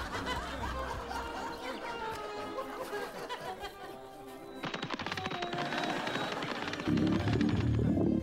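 Background music, then about five seconds in a rapid clatter, and near the end a loud low rumble starting. It is the ground rumbling under a freshly dug hole, said to sound like an empty stomach growling, just before oil gushes up.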